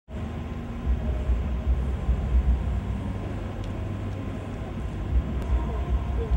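Outdoor urban background noise: a steady low rumble that swells and eases in gusts.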